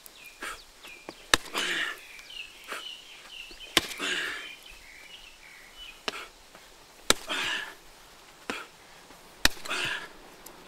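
Punches and kicks landing on a heavy punching bag: four hard strikes a couple of seconds apart, each followed by a brief hiss, with lighter taps in between.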